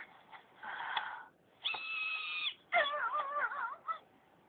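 Cartoon character's non-verbal cries and whimpers in three short bursts: a breathy one, a steady held whine, then a wavering, warbling wail near the end.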